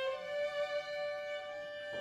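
String quartet playing a slow passage: a violin holds a long bowed note, moving up to a slightly higher held note right at the start, with a bow change near the end.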